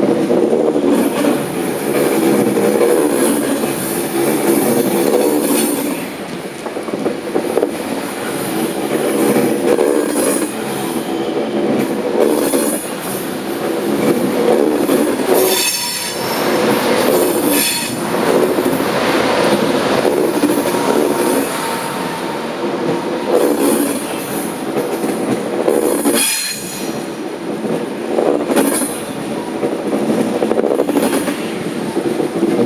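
TGV Lyria double-deck high-speed train pulling out of the station and rolling slowly past: a continuous rumble and clatter of wheels on rail, with high-pitched wheel squeal in places. The noise dips briefly a few times, once as the two coupled power cars go by about halfway through.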